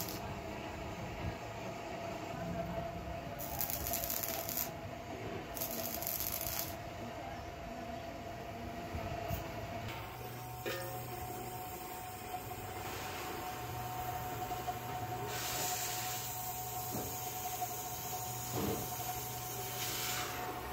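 Welding on an iron pan. In the first seven seconds arc welding comes in three hissing bursts as the arc is struck and broken. Later a gas torch flame hisses steadily over a constant low workshop hum.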